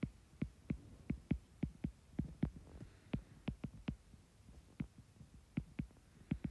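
Stylus tip clicking on a tablet's glass screen while handwriting: a string of quick, irregular ticks, with a short pause about two-thirds of the way through.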